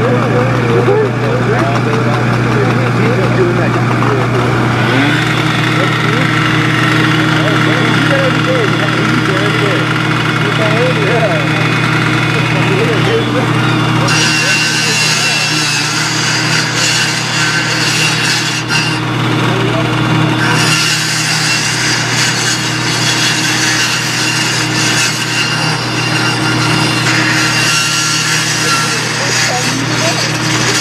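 A fire apparatus engine running steadily. From about 14 seconds in, a power saw cuts into a steel roll-up door, adding a grinding hiss over the engine.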